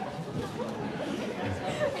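Low, indistinct chatter of several voices, with no single clear speaker.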